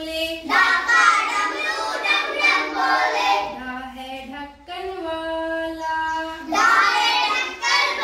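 A class of children singing a Hindi alphabet (varnamala) song in call and response: a single voice sings a line and the group sings it back in unison, twice. The chorus entries are the loudest parts.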